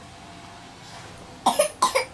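Two short coughs in quick succession, about a second and a half in.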